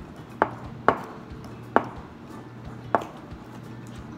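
Wire balloon whisk knocking against the side of a glass mixing bowl while beating thick batter: four sharp clacks at uneven intervals, the first two about half a second apart.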